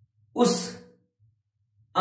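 Speech only: a man says one short, breathy word about half a second in, between pauses, with near silence around it.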